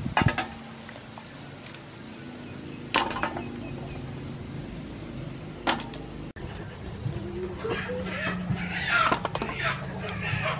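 Clam shells clicking and clinking as cooked clams are pried open by hand and the meat is dropped into a metal bowl, with three sharp clicks about three seconds apart. Toward the end, busy bird calls join in.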